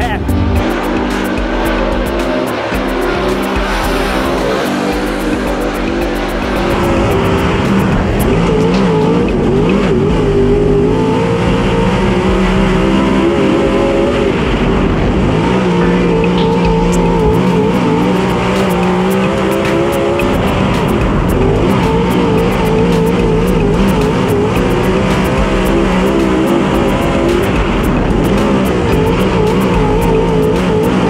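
A Dirt Super Late Model's V8 engine heard from inside the cockpit, running hard around a dirt oval. It is loud throughout from about seven seconds in, its pitch rising and falling with the throttle.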